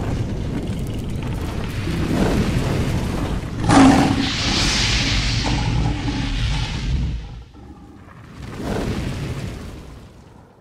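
Deep rumbling booms like thunder, with a sharp hit about four seconds in followed by a hiss, then a second swell that fades out near the end: a dramatic intro sound effect.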